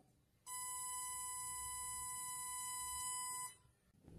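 Synthesized 1000 Hz positive sawtooth wave test tone, a steady, bright, buzzy pitch. It starts about half a second in and cuts off suddenly about three and a half seconds in.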